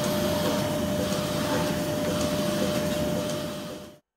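Milking machine running in a cow milking parlour: a steady mechanical hum with one constant tone through it, fading out near the end.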